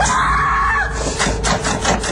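A locked door being yanked and shoved: a long strained creak, then from about a second in a quick run of rattling knocks as it shakes in its frame.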